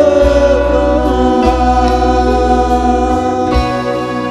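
Live worship band performing a Burmese praise song: sung vocals over acoustic guitar, keyboard and drums, with notes held long and steady.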